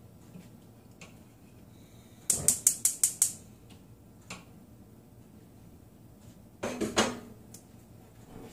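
Kitchenware clinking as a ceramic plate and a cooking pot are handled: a quick run of about six sharp knocks about two seconds in, a single knock a second later, and another short cluster near the end.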